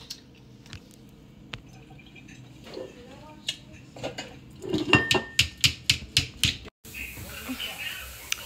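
Sharp clicks and clinks of glass being tapped, sparse at first and then about five a second from the middle, stopping abruptly near the end.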